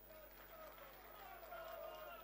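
Near silence, with faint distant voices in the background.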